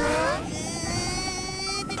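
A cartoon character's strained, buzzing grunt of effort, held steady for over a second after a short rising exclamation.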